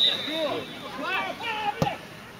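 A referee's whistle blowing one steady high note for the free kick, ending about half a second in, then men's voices shouting, with a single sharp knock near the end.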